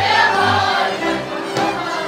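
A live Hungarian folk string band plays dance music: fiddles carry the tune over a double bass that keeps a steady beat of about two pulses a second.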